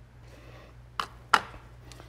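Two sharp clicks about a third of a second apart, a hard object knocking on the metal tabletop, after a faint rustle of coconut-fibre absorbent granules being sprinkled onto the spill.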